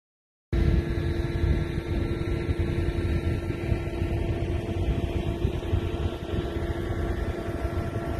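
A steady engine drone with a constant hum, over gusty wind rumble on the microphone, starting suddenly about half a second in.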